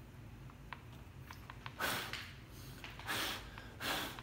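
Three short, soft puffs of breath from someone leaning close over the work, with a few faint light clicks from handling a phone in a plastic jig in the first half.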